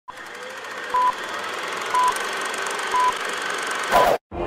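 Bars-and-tone test beeps: a short, steady beep about once a second over a continuous bed of static hiss.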